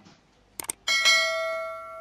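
Two quick clicks followed by a single bell ding that rings on and slowly fades: the click-and-bell sound effect of a YouTube subscribe-button animation.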